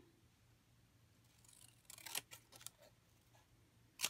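Scissors cutting a strip of white paper: a few faint snips about two seconds in, otherwise near silence.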